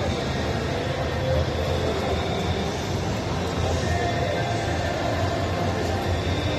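Steady shopping-mall background noise: a continuous low rumble with indistinct crowd voices.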